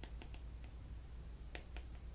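Faint clicks of a stylus tapping on a tablet screen while handwriting: a few light taps in the first half-second and two more about one and a half seconds in, over a low steady hum.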